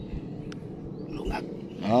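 Shallow seawater sloshing as someone wades, with a single sharp click about half a second in.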